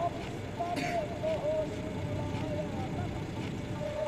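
Car engine idling, a low steady rumble, with a thin wavering tone drifting above it.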